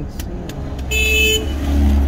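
A car horn gives one short toot about a second in, followed by the low rumble of a car passing close by.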